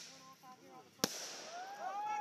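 A firework going off with one sharp bang about a second in, its report echoing briefly.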